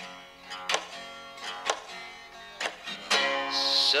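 Electric guitar strummed in a loose blues rhythm: several separate chord strokes, then a chord left ringing near the end.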